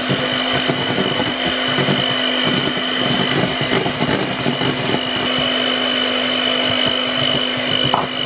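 Electric hand mixer running steadily, its beaters whisking whipping cream and sugar in a bowl, with an even motor whine. The cream is being beaten until it is very thick.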